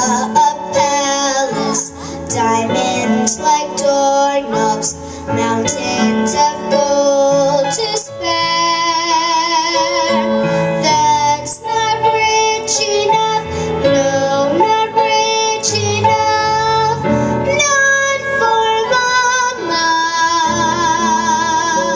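A young girl singing a slow ballad into a microphone over a recorded piano accompaniment, holding long, wavering notes.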